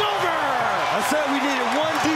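An excited male commentator's drawn-out shout over an arena crowd cheering a buzzer-beating blocked shot.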